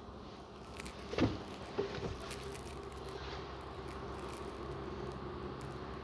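A few soft knocks and handling noises as someone moves out of a truck's rear cab, the loudest a little over a second in, then a faint steady low hum.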